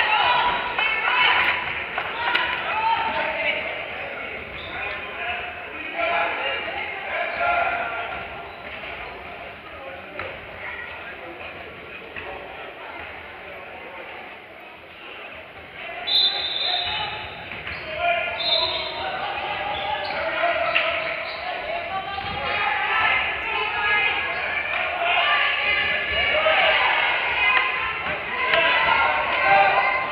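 Basketball bouncing on a hardwood gym floor with voices of players and spectators echoing in a large gym. About sixteen seconds in, a steady high tone sounds twice, typical of a referee's whistle.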